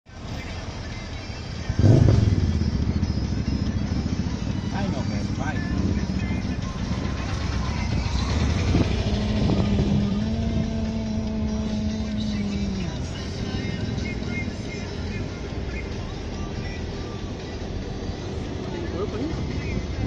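Car driving slowly, its engine and road noise heard from inside the cabin. The noise jumps up sharply about two seconds in, and a steady droning tone holds for a few seconds around the middle.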